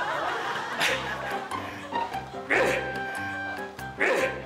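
Background music of an edited TV segment, with a bass line stepping through notes. Two short, loud bursts break in, about a second in and about halfway through.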